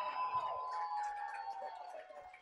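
A person's long, drawn-out vocal sound held on one note that slowly falls in pitch, over faint room chatter.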